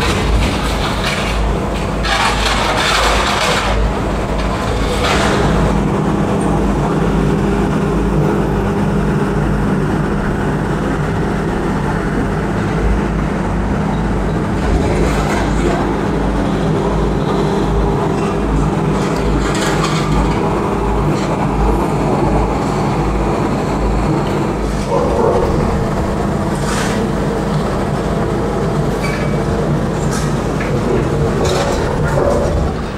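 Steady low drone of heavy demolition machinery running, with wind rumbling on the microphone and a few scattered clanks and crunches.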